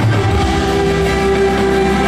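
Live rock band playing a loud, held chord of steady sustained tones over low bass, heard from the arena audience.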